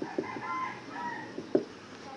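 Marker pen writing on a whiteboard: faint squeaks as the strokes are drawn, then a few short taps as the points are dotted, the last about a second and a half in.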